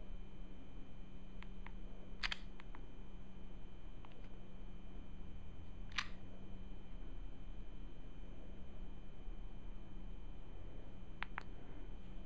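Quiet, steady electrical hum with a few faint, sharp clicks scattered through, the clearest about two seconds in and about six seconds in, from hands handling an iPod Touch held up close to the camera.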